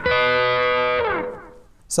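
Overdriven electric guitar sounding a two-note harmony a diatonic third apart, struck once and held for about a second before dying away.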